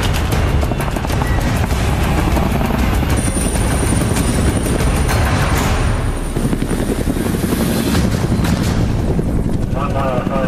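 Soundtrack of a computer-animated combat scene: music over a dense, continuous mix of battle sound effects with helicopter rotor noise, dipping briefly a little past halfway.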